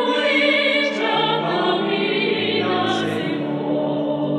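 A choir singing a Spanish Catholic hymn in long held notes with vibrato, over a sustained accompaniment whose bass line steps down twice.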